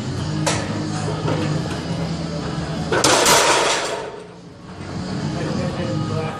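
Loaded barbell crashing down in a power rack on a failed squat: one loud crash of the steel bar and weight plates about three seconds in, ringing out for under a second. A single sharp knock comes about half a second in.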